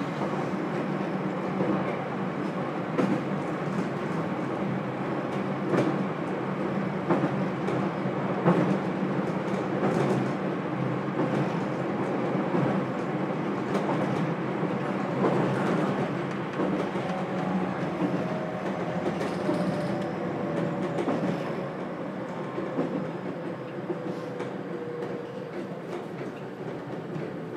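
Interior running sound of a JR Kyushu 813 series electric multiple unit motor car: steady wheel and track rumble with repeated clicks over rail joints. In the second half a thin motor whine slowly falls in pitch and the running noise eases as the train slows, after the announcement that the exit is on the left.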